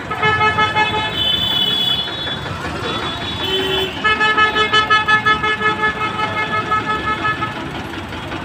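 Vehicle horns honking: one long steady blast for about two seconds, a brief lower toot about three and a half seconds in, then another long blast that pulses rapidly, over a background of traffic noise.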